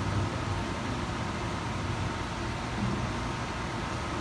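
Steady low rumble and hiss of background room noise.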